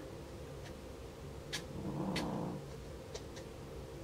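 Faint squeak from the vinyl doll part rubbing as it is handled and painted, with a few light clicks.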